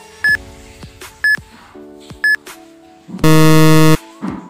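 Countdown timer sound effect: a short, sharp beep once a second, three times, over a steady background chord, then a loud, flat buzzer lasting under a second as time runs out.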